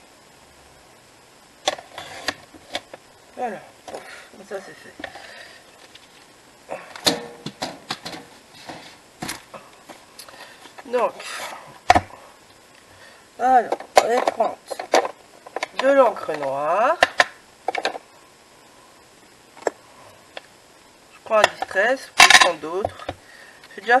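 Clicks, taps and scrapes of black card being cut on a sliding paper trimmer and handled on a cutting mat, with brief stretches of an unclear voice in between.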